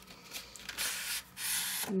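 Paper rubbing on paper as a card is slid out of a paper envelope, a dry hiss that comes in two strokes in the second half.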